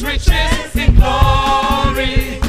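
Live gospel praise singing: a man leads into a microphone with other voices joining, over a drum beat, holding one long note through the second half.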